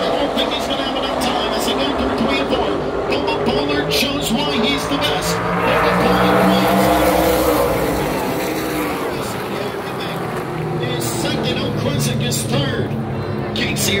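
A pack of short-track race cars running at speed past the grandstand. Their engine note builds and rises in pitch as they approach, is loudest about six to seven seconds in, then falls away.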